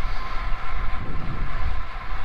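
Wind rushing over a clip-on lavalier microphone on a rider of a moving road bike, heard as a steady low rumble, mixed with the tyres running on asphalt.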